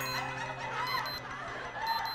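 Digital wristwatch alarm beeping in short high-pitched bursts, at the start and again near the end, over soft background music.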